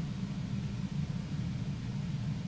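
Steady low hum of room background noise through the sound system, with no other sound standing out.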